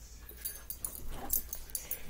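Felt-tip permanent marker squeaking on paper in a run of quick short strokes, drawing a row of small lines.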